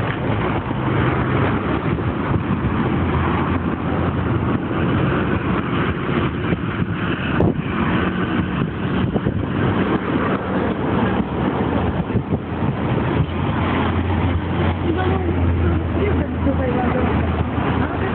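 Continuous road traffic: cars, trucks and buses running past, with a low engine hum that grows louder a few seconds before the end.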